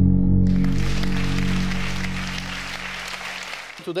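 Audience applause that starts about half a second in and dies away near the end, over the last held chord of ambient intro music fading out.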